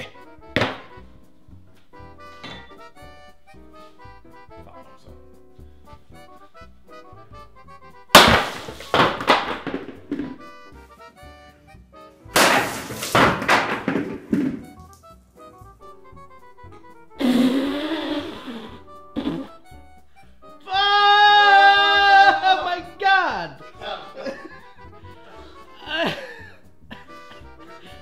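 Two heavy axe blows into a wooden tabletop, about four seconds apart, each a loud sudden impact with a short ringing tail, over quiet background music. A man shouts loudly later on.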